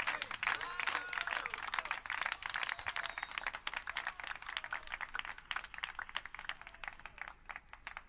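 Audience applause at the end of a live song, with a few voices cheering in the first second or so; the clapping thins and fades down near the end.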